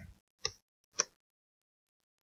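Two short clicks about half a second apart, then dead silence.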